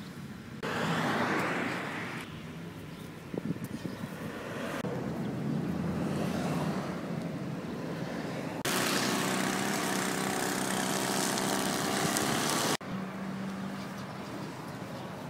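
Road traffic: passing vehicles with a low engine drone and tyre noise. The sound changes abruptly a few times, loudest from about 9 to 13 seconds in, where it cuts off suddenly.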